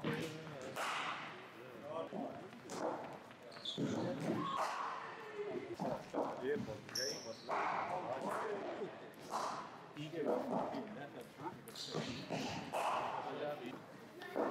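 Cricket balls bouncing on the artificial pitch and striking bats in indoor practice nets: sharp knocks repeating every second or two in a large hall, with voices in the background.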